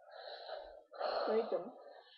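A girl's breathy voice close to the microphone: two long breathy exhalations, about a second each, the second carrying a brief voiced note partway through.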